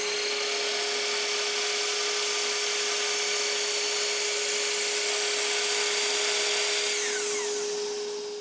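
Bosch GCM 12SD 12-inch miter saw running at full speed with a thin-kerf Bosch blade while the blade is lowered through a small wood block, with a steady hum underneath. Near the end the motor winds down with a falling whine.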